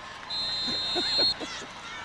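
A whistle blown once: a steady, high, unbroken tone held for about a second, with faint crowd voices behind it.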